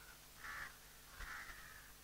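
A bird calling faintly twice, a short call about half a second in and a longer one just after a second in.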